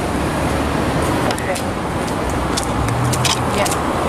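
Road traffic noise on a busy street as an SUV drives away, with indistinct voices underneath and a few light clicks in the second half.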